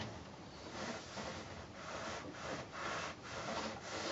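Small craft iron sliding back and forth over cotton patchwork on a padded pressing mat, heard as a series of faint, soft rubbing strokes.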